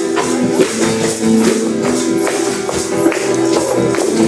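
Live folk song on a strummed acoustic guitar, with hand percussion and jingles keeping a steady beat of about two strikes a second, and voices holding the tune.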